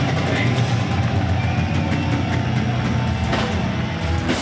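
A loud, steady low drone from the band's amplified instruments, a held bass or guitar note ringing through the stage amps.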